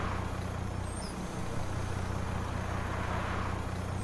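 Cartoon engine sound effect of a small bus driving along, a steady low hum with a soft swell of road noise near the start and again near the end.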